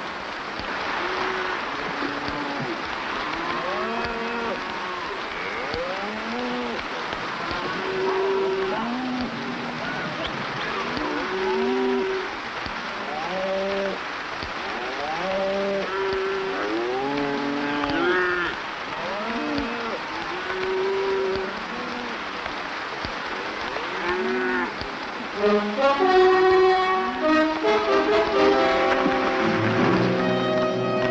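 A herd of cattle mooing, many overlapping calls that rise and fall in pitch. Near the end, music comes in.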